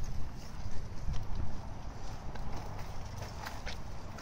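Walking on a paved path while pushing a stroller: footsteps tapping over a low rumble of the stroller's wheels rolling.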